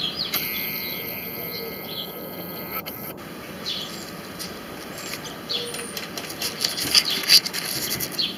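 Small birds chirping in the background. A steady high whine runs for about the first three seconds and cuts off suddenly, and there are a few sharp clicks of camera handling near the end.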